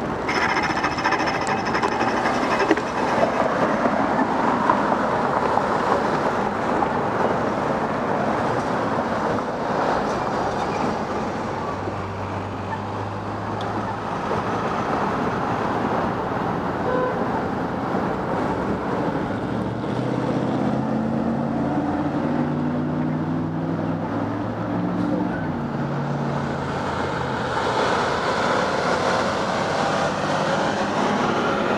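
City street traffic heard from a bicycle: wind rush on the camera while riding, then passing cars while stopped at an intersection. A brief high squeal comes about a second in, and from about twenty seconds in a large vehicle's engine pulls away, its pitch stepping up through the gears.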